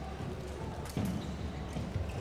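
Indoor handball game sound: a steady low crowd murmur with a few thuds of the ball bouncing on the court floor.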